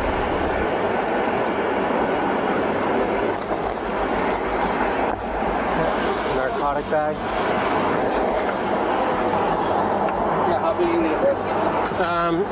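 Steady traffic noise along a street, picked up by a police body camera, with a short stretch of speech about seven seconds in.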